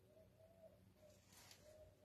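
Faint cooing of a dove in the background: a run of soft, low, slightly arched notes, with a brief rustle about one and a half seconds in.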